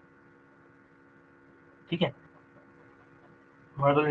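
Faint, steady electrical hum made of several held tones, in a pause between words. A short vocal sound comes about two seconds in, and a man's speech starts again near the end.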